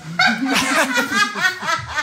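A woman laughing heartily in a quick run of repeated bursts, starting a moment in.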